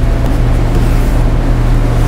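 A loud, steady low hum with a noisy rumble over it, unchanging throughout.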